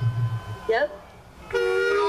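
A loud horn-like blast of several steady held tones, starting abruptly about one and a half seconds in and shifting in pitch near the end.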